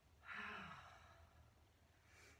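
A woman's breathy exhale, a sigh, starting about a quarter second in and fading out over about a second.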